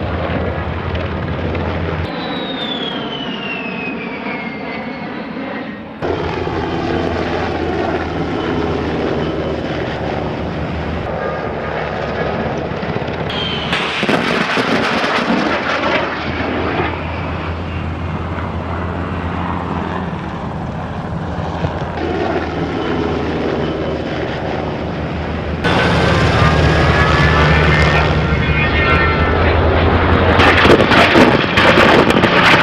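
Fairchild Republic A-10 Thunderbolt II's twin turbofan engines on low passes: a loud jet sound with a whine that falls in pitch as the aircraft goes by, in several joined shots that cut abruptly from one to the next. It grows louder near the end.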